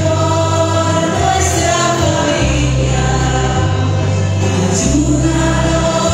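A choir singing a hymn over a sustained low accompaniment whose bass note shifts every second or so.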